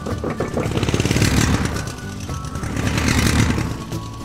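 Toy monster-truck engine sound effect, a pulsing motor rumble that revs up and eases off, over background music.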